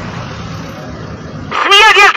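Steady outdoor street background noise with a low hum. Near the end a loud, high-pitched human vocal call with a rapidly wavering pitch and no clear words breaks in.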